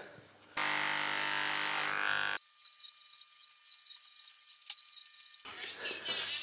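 Electric dog hair clippers buzzing steadily, starting about half a second in. About two and a half seconds in the buzz drops to a quieter, thinner high hum, with a single click near the end.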